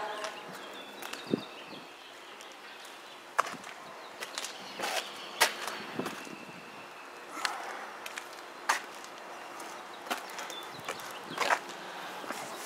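Footsteps and small knocks at irregular intervals, a second or more apart, over quiet outdoor background.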